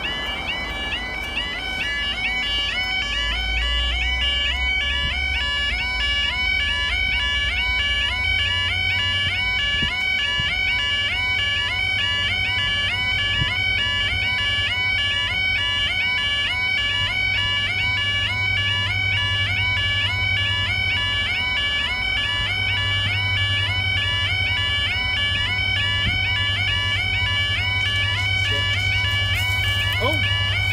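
Level crossing warning alarm sounding continuously, a fast repeating two-tone yodel that warns that a train is approaching. A low rumble runs underneath and grows stronger in the second half.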